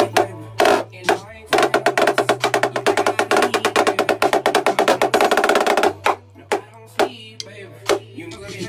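Snare drum played with sticks: a few sharp separate strokes, then a fast, dense run of strokes from about a second and a half in to near six seconds, then scattered hits again. A low bass line from a backing beat runs underneath.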